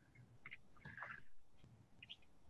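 Faint cuts of a kitchen knife slicing rings off a red onion on a cutting board, heard about half a second and a second in.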